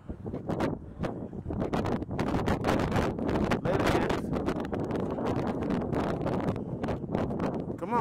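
Wind buffeting the camera microphone, with frequent rustles and knocks of handling and clothing as the camera is carried while walking.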